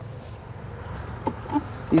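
A steady low hum with a faint hiss behind it, and a few faint short sounds in the second half.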